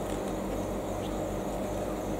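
Steady background hum and hiss with no distinct events: a low electrical hum under an even noise floor, the room tone of a hall with its sound system running.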